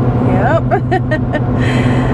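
Steady low drone of a pickup truck at highway speed, heard inside the cab, with a person laughing briefly about half a second in.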